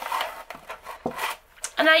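Handling noise: rustling and a few soft knocks as small gel polish bottles are taken out of their boxes and set down on a padded mat. A woman starts speaking near the end.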